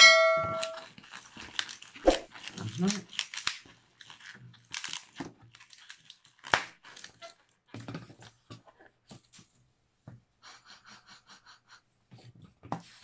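Latex modelling balloon being twisted and rubbed between the hands, giving short squeaks and creaks. A bright chime from a subscribe-button animation rings briefly at the very start.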